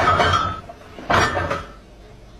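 Side-by-side refrigerator door banging twice, about a second apart, with the jars and bottles in its door shelves clinking each time.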